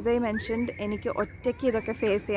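A woman talking to camera in a steady run of syllables. Under her voice a thin, steady high tone sounds for about a second from half a second in, and again briefly near the end.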